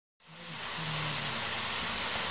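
HO scale model train running along its track: a steady rushing hiss of wheels and motor with a low hum that comes and goes, fading in just after the start.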